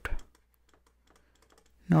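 Faint, scattered ticks and taps of a stylus on a pen tablet while handwriting, between spoken words; the end of a phrase at the start and a word of speech near the end.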